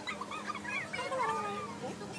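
A group of guinea pigs squeaking as they are fed: a quick run of short, high, rising-and-falling squeaks, then a longer arching call just past the middle.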